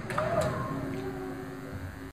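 Faint room sound with a brief indistinct voice early on and a low steady hum, slowly fading out.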